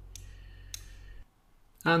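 Two computer mouse clicks about half a second apart over a low steady electrical hum. The hum cuts off suddenly just past a second in, and a man's voice begins near the end.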